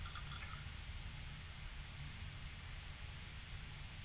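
Faint, steady room tone: a low hum with a soft hiss over it.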